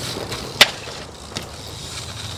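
BMX bike tyres rolling over paving stones. About half a second in there is one sharp loud clack, and a lighter click comes near the middle.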